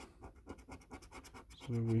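A coin scratching the coating off a paper scratch card in quick, faint, repeated strokes.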